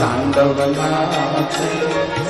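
Hindu devotional music: a Shiva bhajan with a chant-like vocal over Indian instruments, playing steadily.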